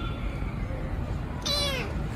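A hungry tabby kitten meows once, a short call that falls in pitch, about one and a half seconds in, over a steady low rumble.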